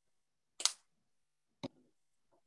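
Squeeze bottle of acrylic craft paint being dispensed onto a palette: a brief squirt about half a second in, then a single sharp click about a second later.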